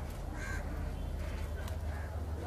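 A bird's harsh call about half a second in, and a fainter one near the end, over a steady low outdoor rumble.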